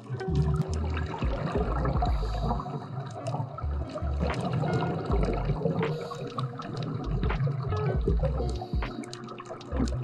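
Background music with low bass notes, laid over underwater bubbling and water noise: a scuba diver's exhaled bubbles.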